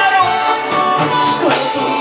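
Mexican band music played live and loud: a melody line of held notes over the band's steady beat, with no words sung in these seconds.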